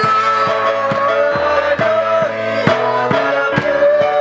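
A group singing a song together to acoustic guitar, with hand claps on a steady beat about twice a second.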